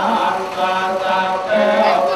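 Khmer Buddhist monks chanting in unison, several male voices holding long notes at a steady pitch.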